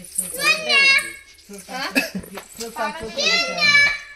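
Children's voices talking and calling out, with two loud, high-pitched calls, one about half a second in and one near the end.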